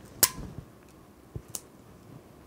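Small handling sounds of scissors and thermal tape on a padded work table: a sharp click about a quarter of a second in, then a soft knock and another click about a second later.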